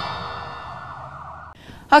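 Closing chord of a TV news bumper jingle fading away, a stack of steady synth tones dying out over about a second and a half.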